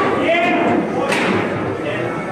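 Rosengart foosball table in play: the ball is struck hard by the players and knocks against the table, a sharp knock about a second in, over the chatter of a crowded hall.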